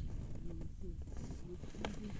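Wind buffeting the camera microphone as a steady low rumble, with faint voices in the background and a single sharp click near the end.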